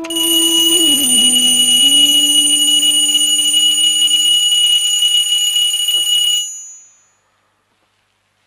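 Alarm clock ringing loudly and steadily with a high, bright ring. It stops about six and a half seconds in and dies away quickly.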